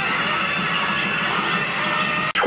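Harsh noise music played through the club sound system: a dense, steady wall of distorted noise without a clear beat, with a thin high tone held over it.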